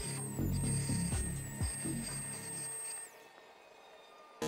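Small high-speed rotary tool with a cutoff wheel cutting into the edge of a headlight projector shroud: a thin high whine that dips briefly under load and winds down about three seconds in. Background music with a pounding low beat plays underneath and fades out near the end.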